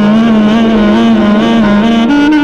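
Clarinet playing a low held note in Hindustani classical style, its pitch wavering and sliding in small ornaments, then stepping up to a higher note near the end. Steady harmonium accompaniment sounds beneath it.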